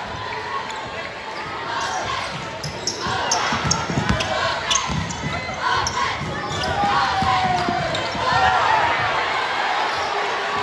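A basketball bouncing on a gym floor during play, with several sharp bounces from about two seconds in, over the voices of players and crowd in a large gym.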